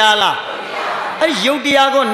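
A Buddhist monk preaching a sermon in Burmese through a microphone, his voice held on long, steady pitches. He breaks off briefly about half a second in, then goes on.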